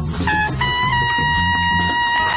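Rap-jazz backing track: a brass-like lead plays a couple of short notes, then holds one long note for about a second and a half over a repeating bass line.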